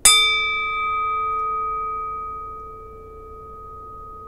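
A brass singing bowl struck once: a bright attack whose highest overtones die away within about a second, leaving a low tone and a higher one that ring on, fading slowly.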